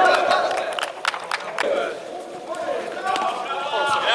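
Players' voices shouting and calling during an indoor five-a-side football game, with several sharp knocks of the ball being kicked in the first couple of seconds.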